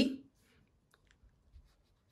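A few faint, scattered clicks of a pen tip touching a sheet of paper on a desk.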